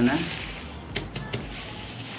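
Clear plastic wrapping around a car headlamp rustling and crinkling under the hands, with a few sharp crackles about a second in.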